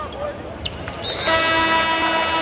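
An arena horn sounds one steady blast, starting a little after a second in and lasting over a second, over the murmur of a sparse basketball crowd. A brief sharp click comes just before it.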